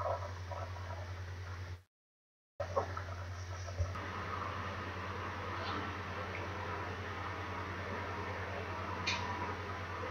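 Steady low electrical hum and faint hiss of a desk recording setup, broken by a brief cut to total silence about two seconds in. A few faint mouse clicks sound over it as the program is started.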